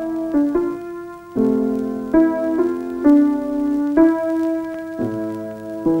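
Piano accompaniment playing a slow run of chords, each struck and held, changing about once a second.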